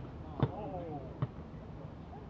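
A basketball bouncing twice on a hard outdoor court, two dull thuds about a second apart, the first louder, with players' voices calling in the background.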